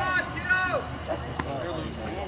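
Voices of people calling out over the field, high-pitched in the first second, with one sharp knock about a second and a half in.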